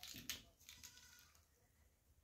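Near silence: room tone with a few faint, short clicks in the first second.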